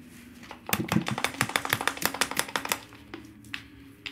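A rapid run of light clicks or taps, about ten a second, lasting about two seconds, then a few scattered clicks over a faint steady hum.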